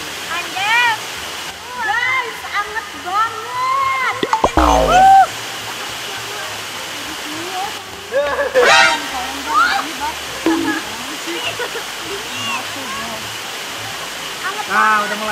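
Steady rush of running water, with voices calling out over it. A short burst of sharp knocks with a heavy thud about four and a half seconds in, and a high-pitched cry a little past halfway.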